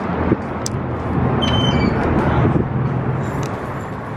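Steady outdoor traffic noise with a low hum, and a short knock about a third of a second in as a glass door is pulled open by its metal handle. A few brief high chirps sound near the middle.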